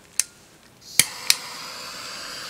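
A butane craft torch being lit: a click, then the gas starts to hiss just before a second in, two sharp igniter clicks follow, and the torch keeps up a steady hiss.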